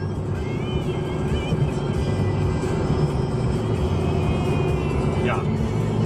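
Steady road and engine rumble heard from inside a car cruising on a highway, with music playing over it.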